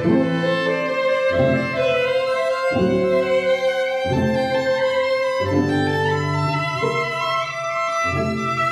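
String quartet playing: low bowed notes repeat in a regular pattern about every second and a half, under a long note held in the upper strings from about two seconds in.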